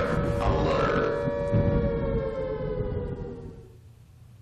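A siren-like or musical sound effect: a held tone of several pitches together, sliding slowly down in pitch and fading out over about three and a half seconds.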